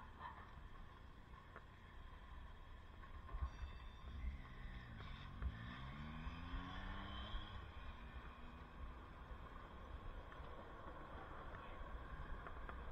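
Steady city street traffic noise, with one vehicle accelerating: its motor note rises in pitch for about three seconds, starting about four seconds in.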